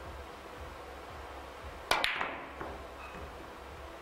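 Cue tip striking the cue ball on a carom billiards table about two seconds in, followed at once by a sharp ball-on-ball click and a few fainter ball knocks as the balls travel. The shot was struck with a little too much force, so the angle did not come down.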